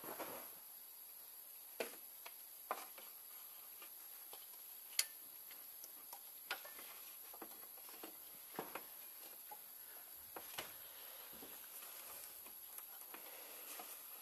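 Light, scattered clicks and taps, a dozen or so at uneven intervals with one sharper click about five seconds in, as the old timing belt is worked off the sprockets and pulleys of a 1.6 HDi diesel engine by hand.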